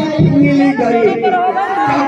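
Speech: a man talking into a microphone over loudspeakers, with chatter behind.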